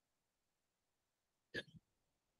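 Near silence on an online call, broken about one and a half seconds in by a single brief, short sound.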